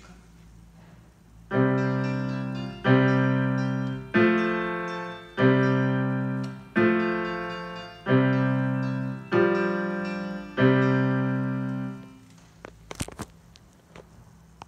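Digital keyboard in a piano voice playing eight slow, evenly spaced chords, about one every 1.3 seconds, each struck and left to fade. The chords start about a second and a half in and stop near the end.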